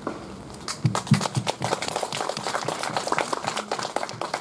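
Audience applauding: irregular clapping that begins about a second in and keeps going.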